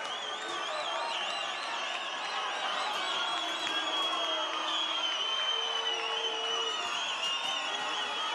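Stadium crowd cheering steadily just after a penalty is scored in a shootout, with shrill warbling whistles riding over the noise.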